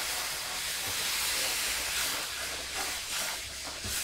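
Milk poured into a hot pan of butter-and-flour roux, hissing and sizzling steadily as it hits the pan, easing slightly near the end.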